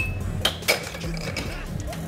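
Air hockey mallets and puck hitting on the table: three sharp plastic clacks with a short ringing, the loudest about two-thirds of a second in, over a steady low hum.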